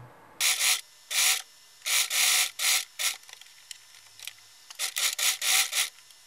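White stretchy fabric rubbing and rustling as it is handled and moved on a table, in a series of short, irregular bursts.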